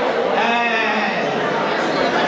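A woman's voice held on a quavering, wavering note for about a second, over the chatter of a crowd.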